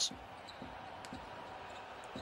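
A basketball being dribbled on a hardwood court, a few faint bounces over a steady low arena background.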